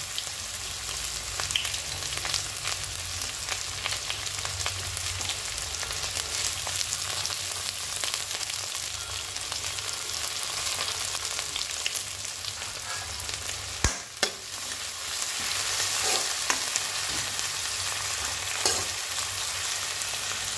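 Chopped onions, green chillies and a bay leaf sizzling and crackling in hot oil in a steel kadai, stirred now and then. There is one sharp knock about two-thirds of the way through.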